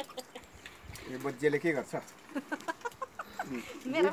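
Chickens clucking in short, repeated calls, fairly quiet, starting about a second in.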